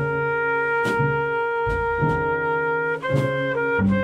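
Small jazz combo of trumpet, alto saxophone, piano, double bass and drums playing a slow, very atmospheric tune: a horn holds one long note for about three seconds, then moves through a few shorter notes, over changing bass notes and light cymbal strokes.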